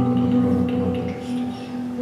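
Live worship band playing softly between songs: held keyboard chords sustained as steady tones, easing off a little in the second half.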